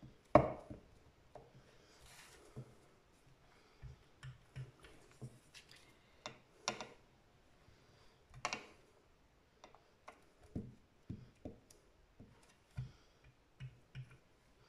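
Rubber stamp on a clear acrylic block being pressed and tapped onto paper over a cutting mat, and dabbed on an ink pad near the end: irregular light knocks and taps, the loudest about half a second in.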